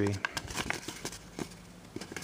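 Creased printer paper rustling and crackling as fingers pinch and press folds into it: a run of small, uneven crackles and rustles.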